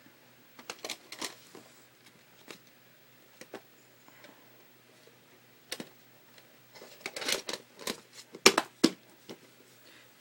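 Plastic clicks and knocks from handling a VHS cassette and its clamshell case, sparse at first, then a quick run of sharper clicks in the last few seconds.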